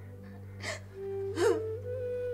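A woman crying, with two sharp gasping sobs, over background music of long held notes.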